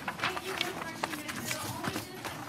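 Faint, indistinct voices with a few short knocks or clicks scattered through.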